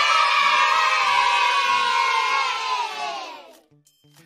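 A crowd of children cheering and shouting together, fading out a little after three seconds in.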